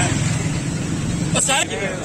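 Steady low rumble of a motor vehicle's engine running close by, with people talking over it; the rumble drops away about one and a half seconds in.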